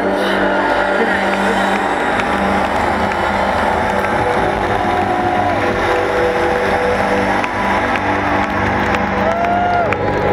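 Concert audience cheering and applauding, with shouts and talk from people close by.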